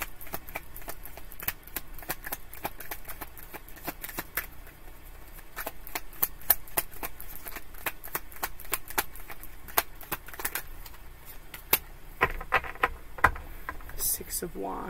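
A deck of tarot cards being shuffled by hand: a continuous patter of quick, light clicks as the cards slide and snap against each other, with a few louder clicks near the end.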